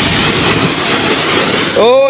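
Self-service car-wash high-pressure lance spraying water onto the front of a car, a loud steady hiss. A voice starts near the end.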